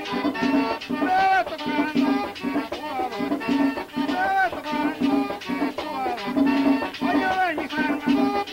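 Accordion-led Dominican merengue típico played as a pambiche: the accordion melody runs over quick, even scraped and shaken percussion and a steady low beat.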